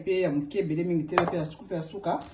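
A voice talking, with one sharp knock about a second in as a plastic spice jar is set down on a wooden cutting board.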